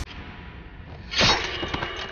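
Fight-scene sound effect: one sudden sharp hit about a second in, fading quickly, over a low background.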